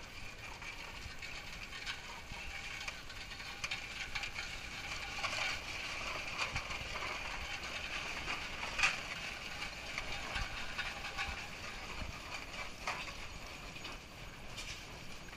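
Case steam traction engine driving slowly: its gears and running gear clatter and click over a steady hiss of steam, with one sharper clank about nine seconds in.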